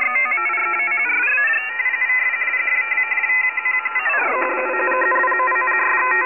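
Layered steady electronic tones, all cut off above a thin upper limit, which slide in pitch together: down at the start, back up after about a second, and down again about four seconds in.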